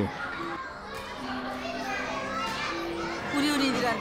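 Many young children's voices at once, overlapping in chatter and calls, growing a little louder near the end.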